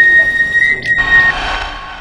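A loud, edited-in sound effect that starts and stops abruptly: a noisy rush with a steady high whistle-like tone held for just over a second.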